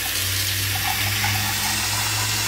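Steady rushing noise with a low hum underneath and no distinct events.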